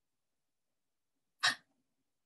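Near silence, then about a second and a half in, a woman gives a single short, breathy laugh.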